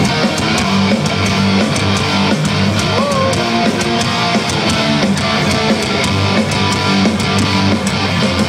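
A live punk rock band playing loud, with distorted electric guitars and bass over a steady drum beat, recorded from within the crowd.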